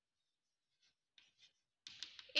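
Faint scratching strokes of chalk writing on a blackboard, a few short strokes about a second in and again shortly after.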